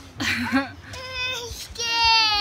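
A toddler's high-pitched voice making short whiny sounds, then a drawn-out wavering "ehhh, scared" near the end: she is frightened by a squirrel close by.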